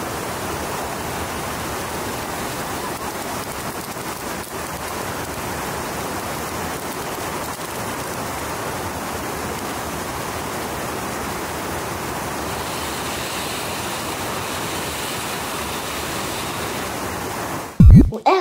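Steady rushing hiss of a ground fountain firework spraying sparks, mixed with water rushing over a river weir. A short, loud thump comes right at the end.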